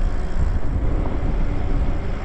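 Wind rushing over the microphone as an electric bike rolls along a paved street, a steady low rumble with tyre and road noise underneath.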